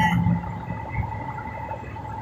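Semi-truck cab noise while driving: a steady low engine and road rumble with a faint steady whine above it.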